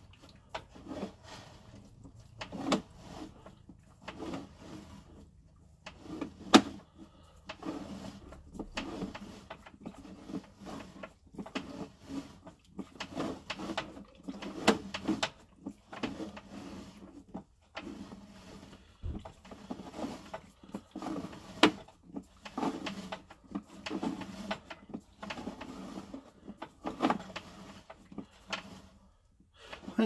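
Sewer inspection camera's push cable being pulled back out of the drain line: irregular rubbing and scraping, with a few sharp clicks.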